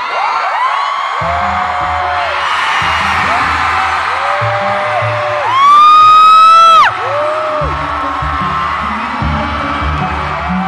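K-pop concert music over the PA, with a heavy bass beat coming in about a second in, and fans screaming over it in long rising-and-falling cries. The loudest is one long high scream close to the phone about halfway through.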